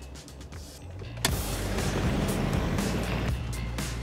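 Toyota Land Cruiser cabin noise while driving over a bumpy, potholed road: engine and tyre noise that starts suddenly about a second in and holds steady, with background music throughout.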